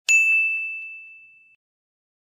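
A single bright ding from an intro sound effect, one clear bell-like tone that rings and fades away over about a second and a half, with a few faint clicks just after it starts.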